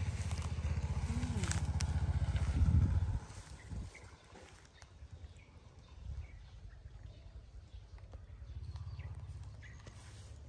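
A vehicle engine running with a low, pulsing hum, loud for the first three seconds and then dropping away suddenly. After that it is quiet with light rustling, and a fainter engine hum returns near the end.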